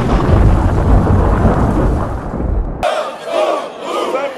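Thunderstorm sound effect, a heavy thunder rumble with rain, that cuts off suddenly about three seconds in. A crowd's voices and shouts follow.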